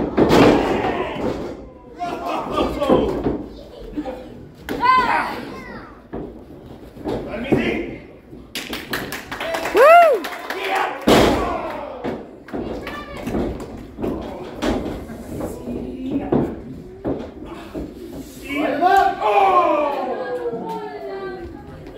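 Wrestlers' bodies and feet hitting the ring canvas in repeated thuds and slams, the heaviest a little after ten seconds, with rising-and-falling shouts from wrestlers or the crowd around five and ten seconds and voices near the end.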